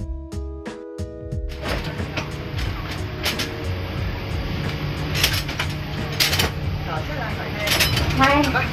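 Plucked guitar music for about a second and a half, then the inside of an Alishan Forest Railway carriage: a steady low hum under a noisy background, with several sharp knocks and clatters and voices near the end.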